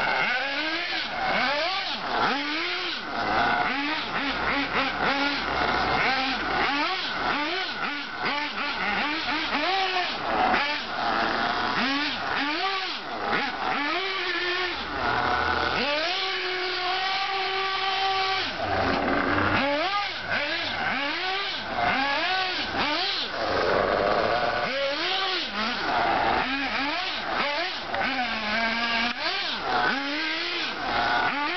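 HPI Trophy 1/8-scale RC buggy's motor revving up and down over and over in short bursts as the buggy is driven in drifts, the pitch rising and falling with each throttle blip. About sixteen seconds in it is held at a steady high pitch for a couple of seconds before the short revs resume.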